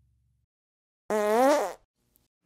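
A cartoon fart sound effect: one pitched, buzzy blast of under a second, a little over a second in, rising and then falling in pitch, after the tail of a song fades to silence.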